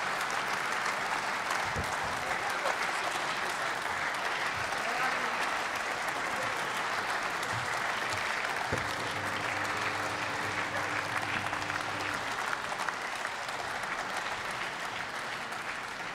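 Applause from the members in a parliamentary chamber, steady throughout and easing slightly near the end.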